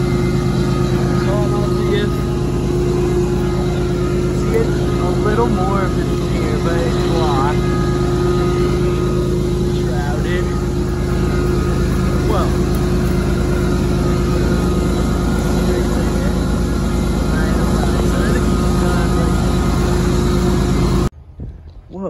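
Diesel locomotives idling: a steady low hum made of several held tones, with short chirp-like glides above it, cutting off suddenly near the end.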